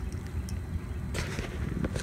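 Hard plastic crankbait lures handled on a workbench: a faint click about half a second in and a short soft hiss about a second in, over a steady low rumble.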